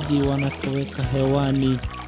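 Swahili gospel song: voices singing over instrumental backing.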